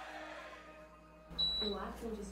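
A short high electronic beep about one and a half seconds in, the air conditioner taking the temperature command, then Alexa's synthesized female voice begins to answer.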